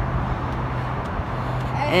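Steady outdoor vehicle noise: an even din with a constant low engine hum and no single event standing out.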